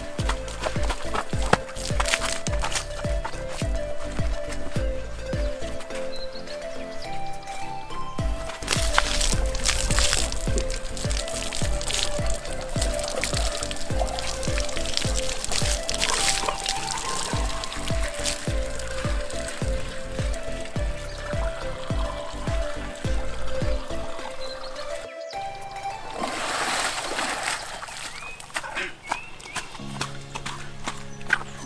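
Background music with a stepping melody, over water poured from a plastic bucket into the upright pipe of a plastic drum, several pours that splash into the pipe.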